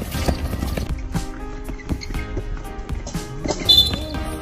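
Music with steady held notes over court noise with repeated knocks, and a short, sharp referee's whistle blast near the end.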